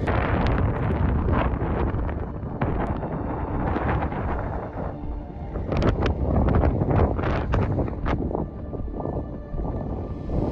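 Wind buffeting a phone's microphone in gusts, a heavy low rumble with a cluster of sharp pops about six to eight seconds in.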